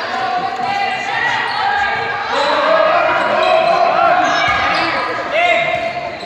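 A handball bouncing on the wooden floor of a sports hall, with shouting voices ringing in the hall and a brief shoe squeak near the end.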